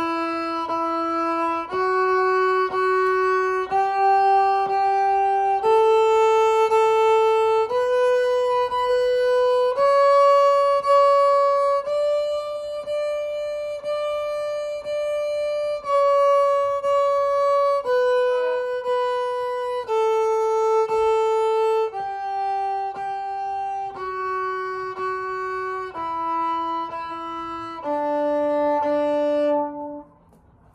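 Viola playing a D major scale up one octave and back down, each note bowed twice in even strokes of about a second. It climbs to high D in the middle, lingers there for several strokes, and steps back down to end on low D.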